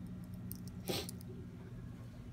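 Steady low electrical hum of aquarium equipment, with a faint click about half a second in and a sharper tap just under a second in.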